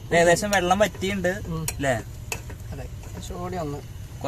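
A man's voice, loudest in the first two seconds and again briefly near the end, over a metal spoon clinking and scraping as rice is stirred in an aluminium pot.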